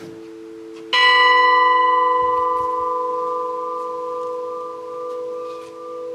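A new church bell, one of a five-bell ring in E major cast by the ECAT foundry of Mondovì, is struck once about a second in and left to ring, its tone dying away slowly. The hum of a bell struck earlier is still sounding beneath it.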